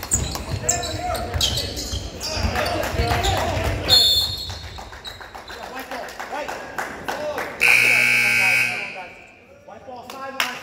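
Basketball dribbling and sneaker squeaks on a hardwood gym floor, with voices around the court. A short, shrill referee's whistle about four seconds in stops play, and later the scoreboard buzzer sounds steadily for about a second.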